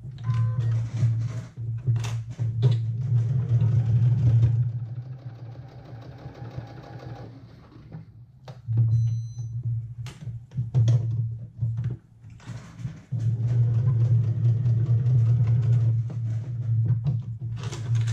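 Sewing machine running in spurts while a basting stitch is sewn slowly around a knit neckband. The motor's steady hum drops out in a pause about five seconds in, starts again after about eight seconds, and stops once more briefly around twelve seconds.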